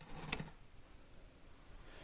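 Quiet room tone with a short, faint rustle and a click near the start.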